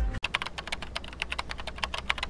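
Rapid keyboard typing clicks, about ten a second, used as a sound effect for on-screen text being typed out.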